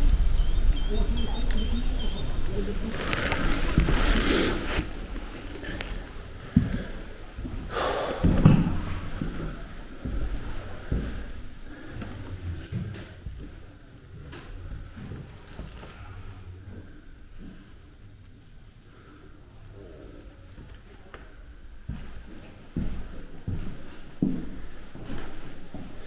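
Low wind rumble on the microphone at an open window for the first few seconds, with a few brief bird chirps. Then faint, indistinct voices and quiet room sounds.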